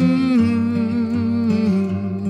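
Acoustic guitar playing with a man humming a wordless held melody over it, the hummed note stepping down in pitch.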